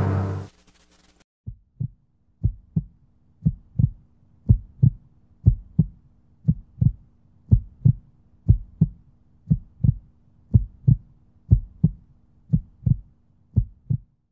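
Music cuts off, then a heartbeat sound effect: paired low thumps, lub-dub, about once a second, over a faint steady hum.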